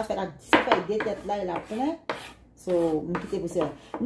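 A metal kitchen knife scraping and tapping against the rim of a small glass jar as chopped garlic is pushed off the blade. It makes a few sharp clinks of metal on glass, with a woman's voice talking around them.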